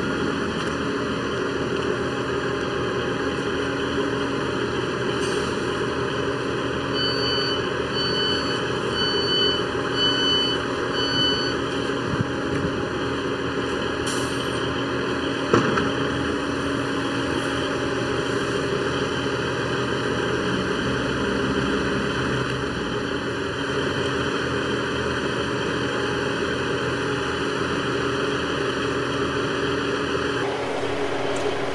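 Northern class 158 diesel multiple unit's underfloor diesel engines running steadily as the unit draws into the platform and stands. Five short electronic beeps, about one a second, sound partway through: the door warning as the doors open.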